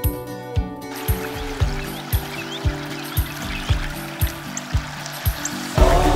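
Background music with a steady beat. Running water trickles beneath it from about a second in and grows louder just before the end.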